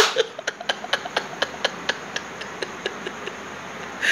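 A series of short, sharp clicks or taps, about four a second, slowing and petering out after about three seconds.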